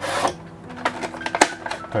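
Hands lifting a black plastic insert tray out of an opened cardboard box: a short scraping rush at the start, then a string of light plastic clicks and rattles.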